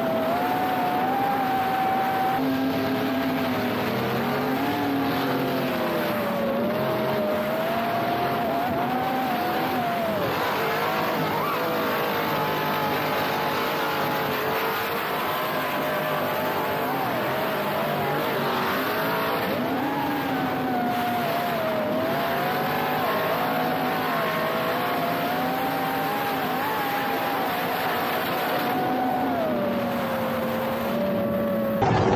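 Drift cars running hard at high revs, the engine note rising and falling continuously, with some tyre squeal.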